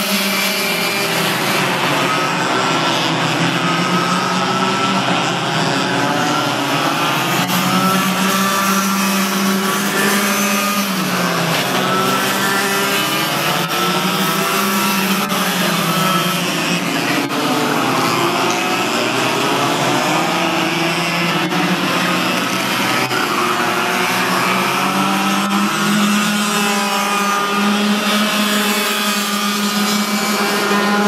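Several Yamaha cadet-class racing karts with small two-stroke engines running on the track together. Their overlapping engine notes rise and fall in pitch at a steady overall loudness.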